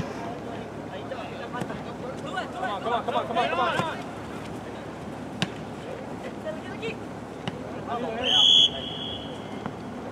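Players shouting across a soccer field, then a single short referee's whistle blast about eight seconds in, the loudest sound here.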